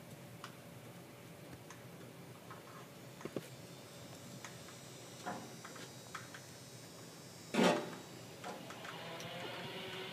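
Faint scattered clicks and ticks of copper wires being handled and twisted tightly together by hand, with one brief louder noise about three quarters of the way through.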